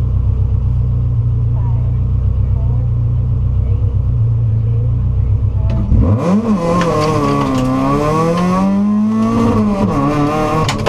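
Subaru WRX rally car's turbocharged flat-four engine idling with a steady low rumble at the stage start line, then launching hard about six seconds in: the revs climb, drop and climb again as it shifts up, with gravel noise from the tyres.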